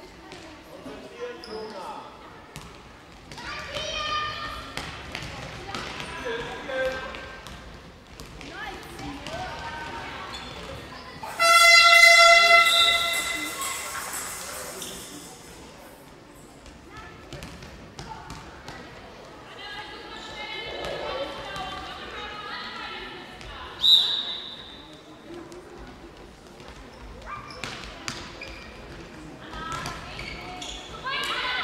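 Handball game in a sports hall: a ball bouncing on the hall floor and players' and spectators' voices echoing. About eleven seconds in, a loud horn sounds for about a second and rings on in the hall. A short, sharp whistle blast comes about two-thirds of the way through.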